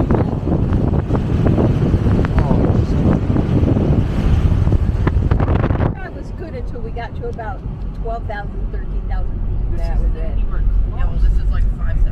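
Wind rushing over the microphone at a moving car's open window, over tyre and engine rumble. About halfway through the rushing drops off suddenly, leaving a quieter steady road rumble with voices talking.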